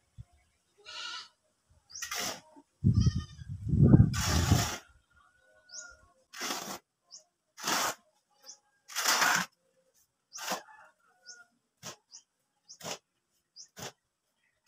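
A goat bleating twice in the first few seconds, along with a loud low rumble. Then a steel shovel scraping through a pile of sand and cement mix on a concrete floor, in short strokes about once a second.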